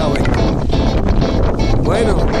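Strong wind buffeting the phone's microphone, a steady rumbling roar, with a brief voice near the end.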